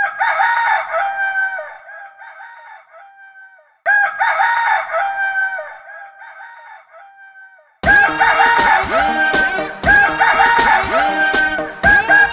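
A rooster crowing twice, about four seconds apart, each call fading away over a few seconds. About eight seconds in, an upbeat children's song starts with a steady beat.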